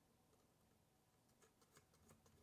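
Near silence, with a few faint ticks in the second half as a small nut is turned by fingers onto the threaded screw end of a Singer 301's drop-feed mechanism.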